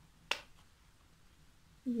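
A single sharp click about a third of a second in, as an aerosol hair spray can is handled close to the microphone.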